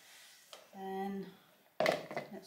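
A voice briefly holds a steady hum-like tone about a second in, then a sharp knock near the end as a plastic pouring jug is set down on the wooden worktop.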